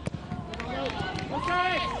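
A soccer ball kicked with a sharp thud at the start, then a shouted call from the field held for about half a second near the end, over open-air stadium ambience.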